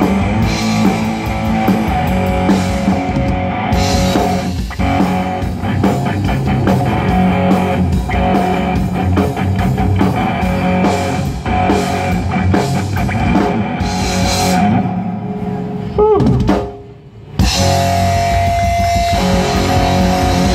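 Live rock band playing, with electric guitars, bass and drum kit. Near the end the music cuts out for about a second, just after a falling note, then the band comes straight back in.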